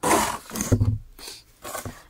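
Cardboard box handled close to the microphone: its flaps scraping and rustling in two rough bursts in the first second, then quieter.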